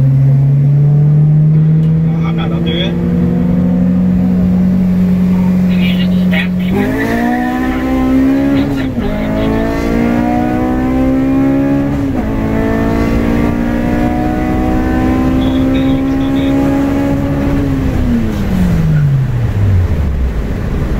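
K24-swapped 8th-gen Honda Civic Si's four-cylinder engine heard from inside the cabin in a highway roll race. It pulls with slowly rising revs, then about seven seconds in the revs jump and climb hard under full throttle. The revs drop sharply twice with quick upshifts, then fall away as the throttle is lifted near the end.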